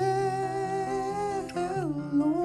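Live band music: a wordless sung note held long over acoustic guitar and electric bass, sliding down in pitch near the end.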